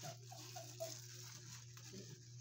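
Quiet room tone: a steady low hum with a few faint, short soft sounds in the first second.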